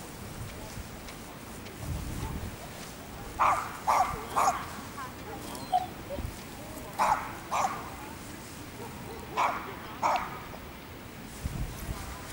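A dog barking in short, sharp barks that come in small groups: three quick barks a few seconds in, then two, then two more.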